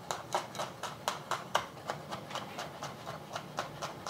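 Chef's knife chopping garlic on a wooden cutting board: a quick, even run of knocks, about four a second.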